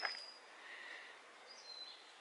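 Faint outdoor background with two thin, high, slightly falling bird whistles: one at the start and one near the end.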